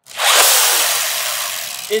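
Three Nerf RevReaper blasters bolted together and fired at once: their hand-driven geared flywheel mechanisms give a sudden loud whir that fades away over about two seconds as the darts go out.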